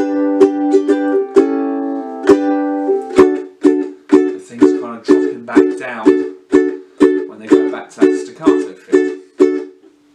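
Ukulele strummed: ringing chords for about three seconds, then a steady run of short staccato chords, about two a second, each cut off by muting the strings with the strumming hand. This is the drop from open chorus strumming back into the staccato strum.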